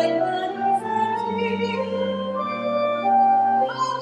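A church hymn: slow, sustained notes that change pitch about every half second to a second, with voices singing alongside instrumental accompaniment.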